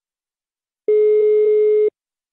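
Telephone ringback tone over the phone line: one steady beep about a second long, starting about a second in, as the outgoing call rings at the other end before it is answered.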